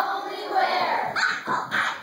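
Children's voices calling out on stage, with several short, sharp yelps and exclamations in the second half.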